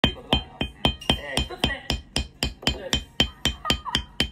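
Mallet tapping a metal leather stamping tool into vegetable-tanned leather on a marble slab, a steady run of sharp strikes at about four a second, each with a brief high ring from the metal tool.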